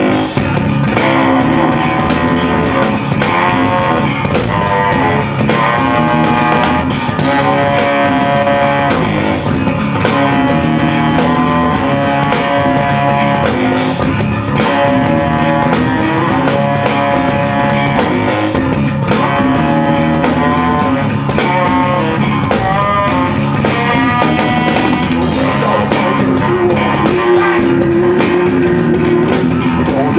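Live funk band playing an instrumental passage: saxophone carrying the melody in held notes over two electric bass guitars and a drum kit.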